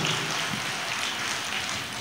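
A large crowd clapping: a steady, even patter of many hands, fainter than the preaching around it.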